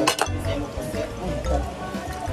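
Plates and cutlery clinking at a crowded dinner table, a quick cluster of sharp clinks at the start, over background music and chatter.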